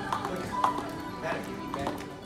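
Jump rope slapping the floor, about three sharp taps a second, over background music.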